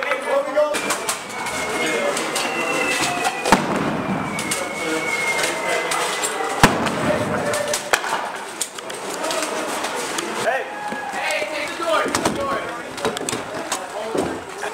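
Small-arms fire in urban combat training: two sharp, loud shots about three seconds apart among scattered fainter cracks, with men shouting. A thin high tone drifts slightly downward for several seconds in the first half.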